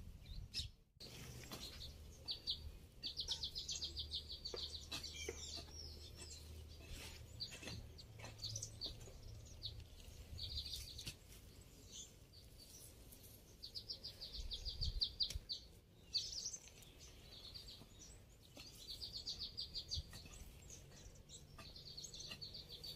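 Birds chirping faintly, with a rapid trill of short high notes repeating every several seconds and single chirps in between. A low hum sits under the first half, and there are a few faint knocks.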